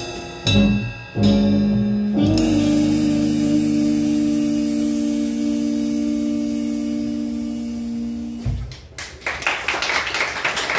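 Live jazz quintet (trumpet, saxophone, electric keyboard, upright bass and drum kit) ending a tune: two short accented hits, then a long final chord held with cymbal wash for about six seconds, which cuts off. Applause starts up near the end.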